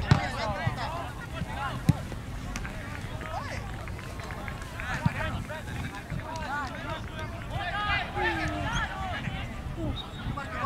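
Shouts and calls of players and spectators across an outdoor soccer field, heard at a distance, with a few sharp knocks: one at the start, one about two seconds in and one about five seconds in.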